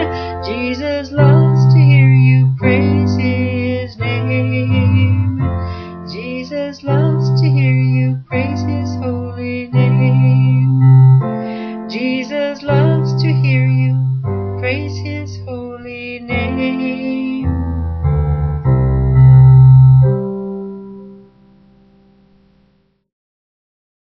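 Electronic keyboard played with a piano sound: chords struck about every second and a half over a strong bass line, ending on a held final chord that fades out near the end.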